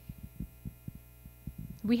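Steady electrical mains hum with scattered soft low thumps during a pause in a woman's speech. Her voice comes back right at the end.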